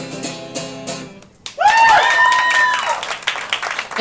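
Acoustic guitar ringing out at the end of a song, then a high voice holds one long whooping note for over a second, with clapping and cheering around it.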